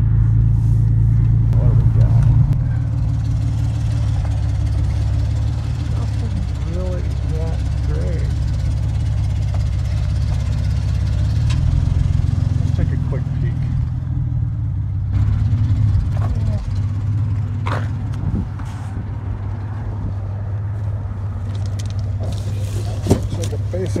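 Vehicle engine running steadily at low speed, a constant low hum.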